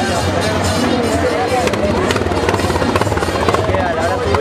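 Folk group singing together in the street, accompanied by rapid clicking percussion, with crowd noise around them; the clicks grow denser after about a second and a half.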